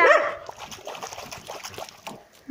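Dog barking once right at the start, then quieter noise as the dogs move about.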